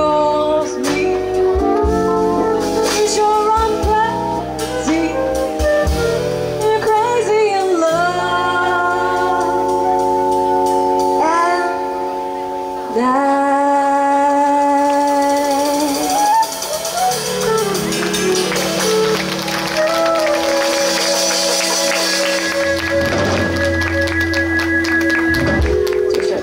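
Live jazz: a female vocalist singing with flute and electric bass accompaniment. The last several seconds are long, steady held notes.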